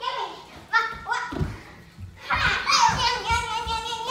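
Children shrieking and squealing at play, with a long held high squeal through the second half. A couple of dull thuds come about a second and a half in.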